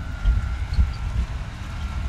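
Wind buffeting the microphone, a low uneven rumble, with a faint steady high tone underneath.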